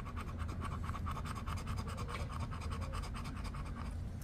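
The coating being scraped off a scratch-off lottery ticket in quick, evenly repeated short strokes.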